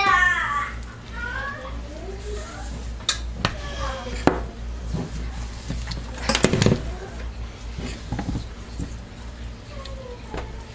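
Plastic tub and utensils being handled on a glass-top stove: scattered knocks and clatters, with a louder cluster about six and a half seconds in.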